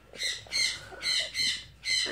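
Yellow-naped Amazon parrot giving a quick run of about five short, high calls, evenly spaced about half a second apart.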